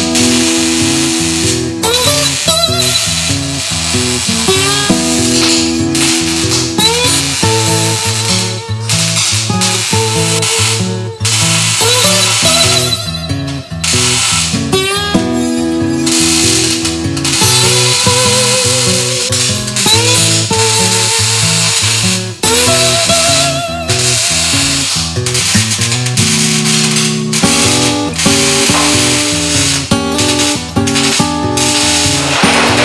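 Background music with held melody notes and steady percussion.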